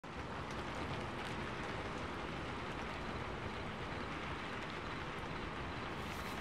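Steady ambient noise hiss with faint scattered ticks.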